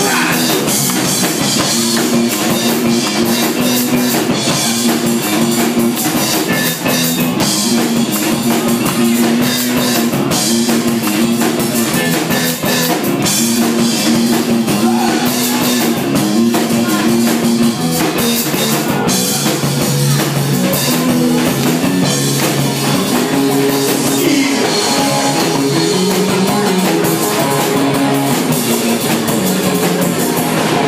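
Live rock band with the electric bass out front, playing a solo that repeats a short riff of a few notes over a steady drum kit beat. The riff moves lower in pitch about two-thirds of the way in.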